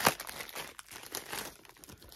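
Clear plastic bag holding a Funko Soda vinyl figure, crinkling as it is handled. A sharp click comes at the very start.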